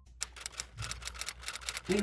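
Quick run of light clicks and scratches from an eyebrow pencil being worked on the brows.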